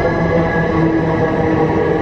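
Siemens S70 light rail vehicle moving along the platform, a steady loud running hum with several steady whining tones over the rolling noise.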